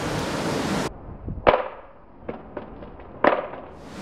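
Wind rushing on the microphone, cut off abruptly about a second in. A few sharp knocks and small clicks follow, the loudest about a second and a half in and another near the end.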